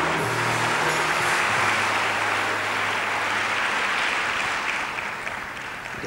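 Audience applauding while the orchestra's last held low notes die away within the first few seconds. The clapping thins out near the end.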